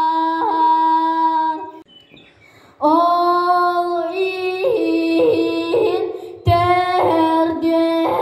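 A boy singing a Sakha (Yakut) toyuk, solo voice: long held notes broken by quick vocal ornaments, with a breath pause about two seconds in and a brief break near the six-second mark.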